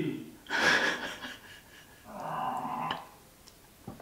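A woman's breathing as she pauses in thought: a sharp breath about half a second in, then a softer, longer breath out around two seconds in, with no clear words.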